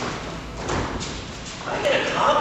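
Dull thuds and shuffling of bare feet on judo mats as two judoka grip and move against each other. A voice starts speaking near the end.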